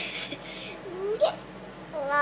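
A sharp breathy sound at the start, then about a second in a baby's short coo rising in pitch, followed by a soft breathy catch.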